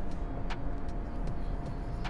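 Pencil drawing small circles on paper, with a light tap about halfway, over a steady low background rumble.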